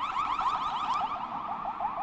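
Electronic alarm warbling: a rapid, even run of short rising chirps.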